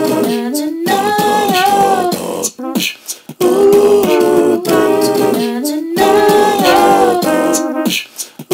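Wordless a cappella singing: a short melodic phrase sung, a brief break about three seconds in, then the phrase again.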